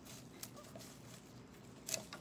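Faint rustling and a few light clicks of flower stems and foliage being pulled out of a glass mason jar. The loudest click comes near the end.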